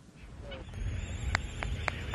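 Albatross chicks at a nesting colony: three short, sharp calls in quick succession about a second and a half in, over a low outdoor rumble.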